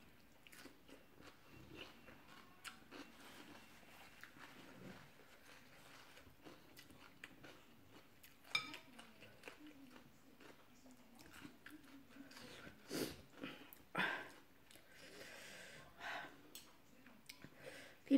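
Quiet chewing and mouth sounds of a person eating rice noodles in curry sauce, with faint scattered clicks of a fork and spoon against a glass bowl. There are a few louder bursts of eating noise near the end.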